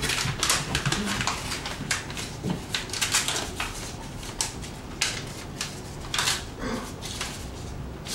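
A paper envelope being torn open and a greeting card pulled out of it: irregular paper tearing and crinkling.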